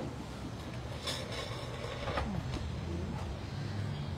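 Outdoor street ambience: a steady low rumble, like an engine or traffic, with a brief rushing hiss about a second in.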